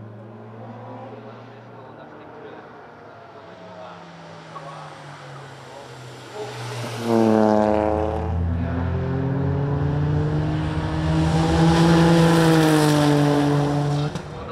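Toyota GR Yaris's turbocharged 1.6-litre three-cylinder engine on track under throttle, fairly faint at first. About seven seconds in it gets much louder and its pitch climbs steeply as the car accelerates hard, then stays high at full throttle.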